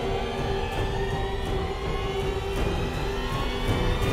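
Propeller aircraft engines running, a steady rumble with a whine slowly rising in pitch, over background music.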